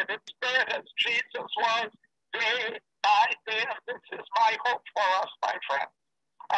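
A man speaking steadily, heard through a Zoom call's audio, with the gaps between his phrases cut to dead silence.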